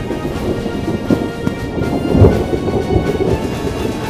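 Recorded thunderstorm: steady rain with a deep rumble of thunder that swells to its loudest a little over two seconds in, under quiet background music with long held notes.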